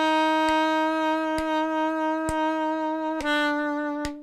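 Saxophone holding one long, steady note, then stepping down to a slightly lower note a little over three seconds in: the start of a descending scale. Faint clicks keep time about once a second.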